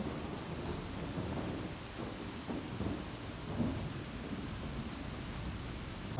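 Heavy rain falling steadily in a thunderstorm.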